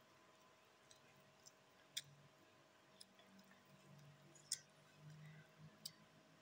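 Quiet eating with the mouth: faint chewing with a few sharp mouth clicks and smacks, the loudest about two seconds in and about four and a half seconds in, over near-silent room tone.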